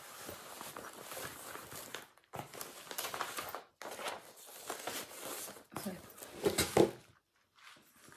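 Rustling and crinkling as fabric and packaging are handled, in four bursts with short pauses between them and the loudest handling near the end.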